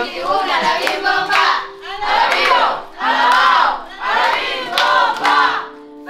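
A group of children shouting together in short repeated bursts, about one shout a second, over background music.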